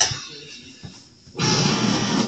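Small electric can opener's motor running and grinding around a can rim for about a second, starting abruptly and cutting out again; this opener is temperamental and stalls on some cans. A sharp knock comes right at the start.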